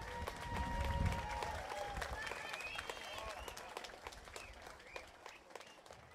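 Scattered applause and voices from a small outdoor audience after a rock song. The band's last amplified notes die away in the first second or so, and the clapping thins out toward the end.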